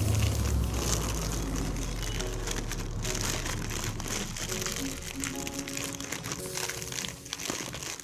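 Clear plastic bag crinkling and rustling as a makeup brush set is handled and slid back into it, the crinkling densest in the first half. Background music plays throughout.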